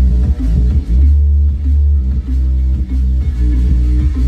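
Bass-heavy electronic music played loud through a JBL Boombox 2 portable Bluetooth speaker, with deep pulsing bass. About one second in, a long low bass note is held for about a second.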